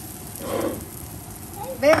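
Slices of buttered bread frying in a non-stick pan, with a steady soft sizzle.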